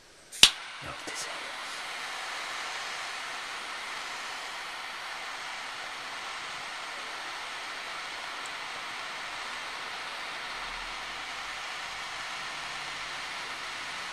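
A gas lighter clicks alight about half a second in, then its flame hisses steadily while it burns a plastic action figure, stopping abruptly at the end.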